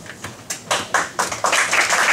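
Audience of students applauding: a few scattered hand claps that quickly build into steady, dense applause from about a second and a half in.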